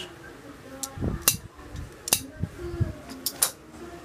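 Hand-held metal clutch holding tool and toothed clutch plate being handled on a concrete floor: a few sharp metal clicks and clinks with dull knocks in between.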